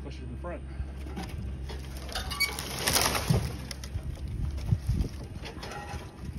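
Cut tree limbs rustling and crackling as the brush is handled, swelling about two to three seconds in, with a few dull knocks of a log being moved.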